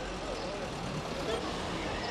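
Street ambience: a steady rumble of road traffic with indistinct voices in the background.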